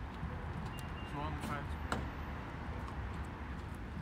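Steady low outdoor background rumble, like distant traffic. A short murmured voice comes about a second in, and a single click just before two seconds.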